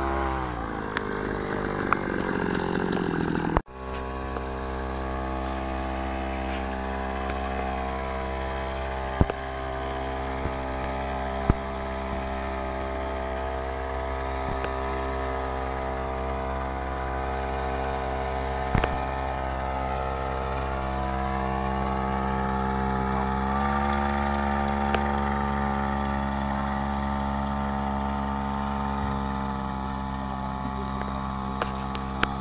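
Small engine of a backpack motorized sprayer running steadily while it mists pesticide. Its pitch sinks over the first few seconds and then breaks off sharply, and after that the note is even, lifting slightly later on.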